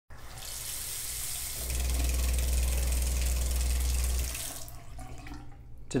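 Water running from a Delta bathroom faucet. About one and a half seconds in, a loud, low steady hum sets in and stops again near the middle. The speaker calls it like a water hammer effect, a fault that a stem (cartridge) replacement fixes.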